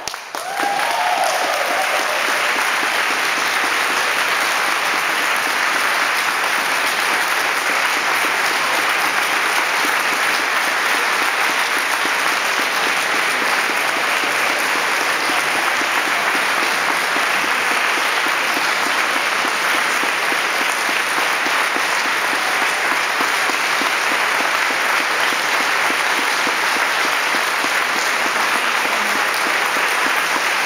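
Audience applause that starts about half a second in, right after the choir's singing stops, and goes on steadily and evenly.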